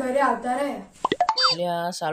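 A boy speaking, then, about a second in, a short cartoon-style 'plop' sound effect made of quick pitch sweeps, followed by a held, steady voice-like tone.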